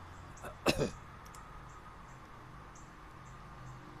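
A man coughs once, shortly, a little under a second in, over a faint steady low hum of room noise.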